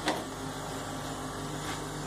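A single sharp click right at the start, then a steady low hum of running equipment.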